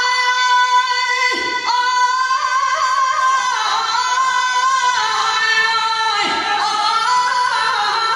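A Persian religious eulogist (maddah) singing a devotional chant solo, holding long notes and ornamenting them with quick wavering turns, with brief breaths about a second and a half in and again near the end.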